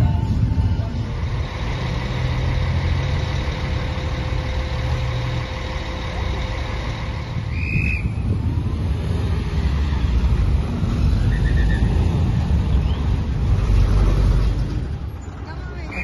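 City street traffic: car and van engines running and passing, with a heavy low rumble, and a short high chirp about halfway through.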